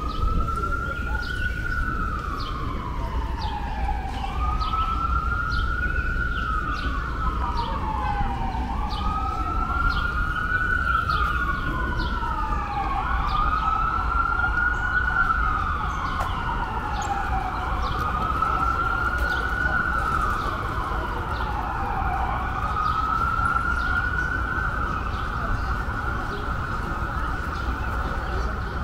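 An emergency vehicle's siren wailing, its pitch rising and falling slowly about every four to five seconds. Around the middle a second wail overlaps it, and for the second half a steady high tone sounds alongside. A low steady rumble runs underneath.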